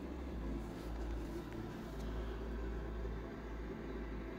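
Steady low hum with a faint even hiss inside a van's cabin, with no distinct events.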